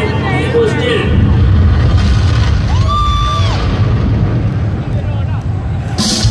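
Large arena crowd cheering and shouting, over a deep rumble that swells about a second in. One voice holds a long shout about three seconds in.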